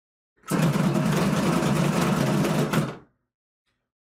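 Dice being shaken and tumbled inside a bubble craps dome: a steady rattling buzz that starts about half a second in and cuts off after about two and a half seconds as the dice settle.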